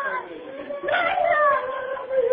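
A long, high, howling cry that wavers and dies away, then starts again about a second in and slides slowly down in pitch.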